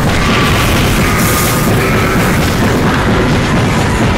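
Continuous loud rumbling of explosion and battle sound effects in an animated fight scene, with no separate blasts standing out, over background music.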